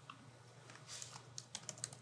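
Faint typing on a computer keyboard: a quick run of light key clicks, sparse at first and coming faster from about a second in, as a short name is typed.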